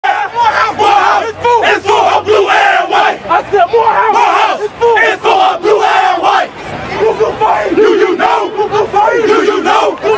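A crowd of young men shouting and chanting together, loud, with many voices overlapping.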